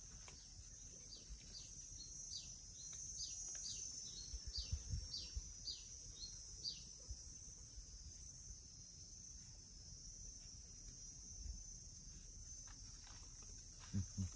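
Steady, high-pitched drone of insects such as crickets, with a bird calling a run of short, downward-sliding chirps, about two a second, over the first half.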